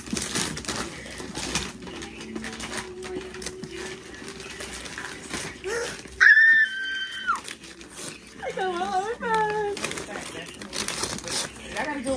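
Wrapping paper and gift box being torn open and rustled by hand, a constant crinkling and tearing throughout. About six seconds in, a loud, high, held squeal of excitement, the loudest sound, followed a couple of seconds later by a shorter wavering vocal exclamation.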